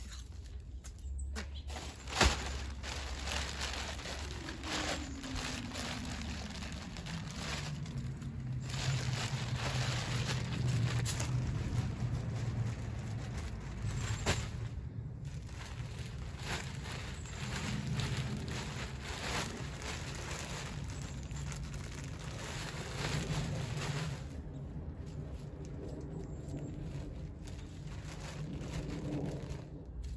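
Wood mulch being poured from a plastic bag and spread by hand: continuous rustling, crinkling and scattering, with one sharp knock about two seconds in.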